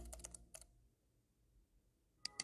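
Keyboard typing sound effect: a quick run of about five key clicks in the first half second, then near silence.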